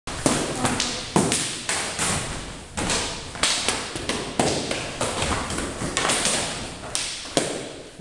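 Sparring strikes: practice sticks clacking against each other and thudding on padded jackets and masks, irregular sharp hits about two to three a second, each with a short echo off the hall.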